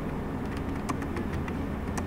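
Laptop keyboard typing: a few scattered, sharp key clicks over a steady low room hum.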